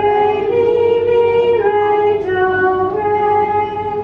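A woman singing solfège pitches as a few long held notes, the second one higher than the first and the rest falling back down.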